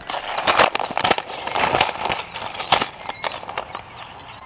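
Footsteps crunching and rustling on dry wood-chip mulch close to the microphone, an irregular run of crackly steps.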